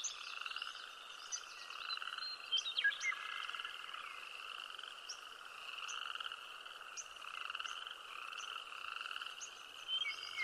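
A chorus of frogs trilling in pulses that swell and fade about once a second, with short, high chirps scattered over it.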